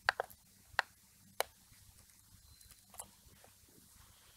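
Computer mouse clicking, a few sharp irregular clicks: a quick double click at the start, then single clicks spread over the next few seconds, over a faint low hum.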